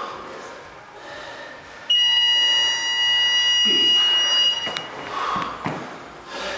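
Gym interval timer's buzzer sounding one long, steady, high-pitched beep of about three seconds, starting abruptly about two seconds in as its countdown reaches zero: the signal that the workout time has run out.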